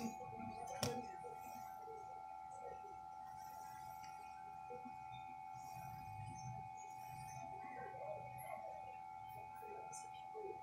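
A steady electronic whine of several high held tones, with one sharp click about a second in and faint low murmuring behind it.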